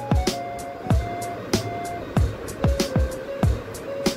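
Background music with a steady beat: deep kick drums about every 0.6 s under sustained synth notes.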